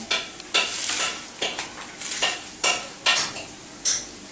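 Tableware clattering on a dinner table: an irregular string of knocks and clinks, about two a second, from steel tumblers and plates being handled.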